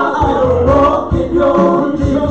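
A live worship band sings a worship song: several voices, men and a woman, in harmony over held keyboard notes.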